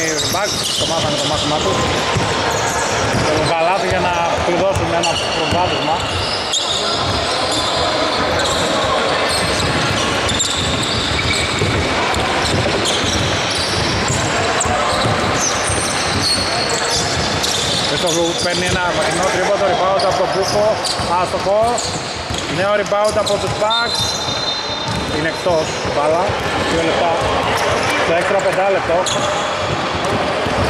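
A basketball bouncing on a hardwood court amid players' voices and shouts, echoing in a large domed hall.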